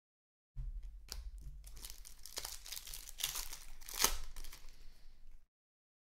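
Foil trading-card pack wrapper being torn open and crinkled by hand, a run of crackling with a sharp loudest rip about four seconds in. It starts about half a second in and cuts off suddenly about a second before the end.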